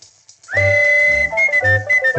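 Latin dance-band music played from an old 78 rpm record. After a brief pause a high note slides up and is held for nearly a second, then the melody and bass carry on.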